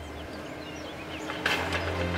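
Small birds chirping faintly in the background. About three-quarters of the way through comes a sudden rush of sound, and a steady low drone sets in.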